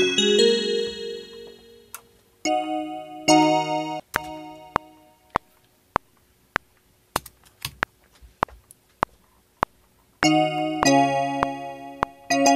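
Piano-like software keyboard chords played on a MIDI keyboard, several sustained chords near the start, then a metronome click ticking alone at about 100 beats a minute for several seconds, until the chords come in again near the end.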